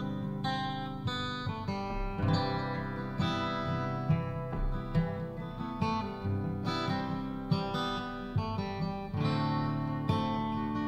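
Acoustic guitar and upright bass playing the instrumental opening of a folk song, with picked guitar notes over low bass notes.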